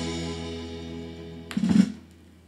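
Recorded folk song ending on a guitar: a held chord fades away, then one last short strum sounds near the end. It is heard through hi-fi speakers in a listening room.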